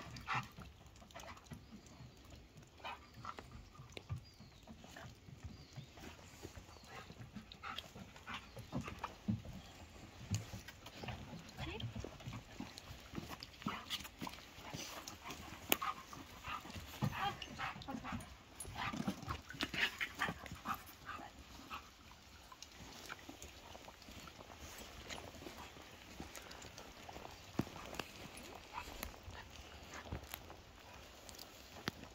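Short, irregular dog sounds from a Doberman as it searches for scent on a lead, busiest in the middle of the stretch.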